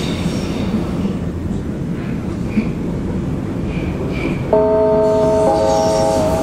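U-Bahn train running, a steady rumble from the car. About four and a half seconds in, a multi-tone electronic chime sounds over the tannoy, holding its notes and shifting pitch once about a second later: the signal that comes before the next-station announcement.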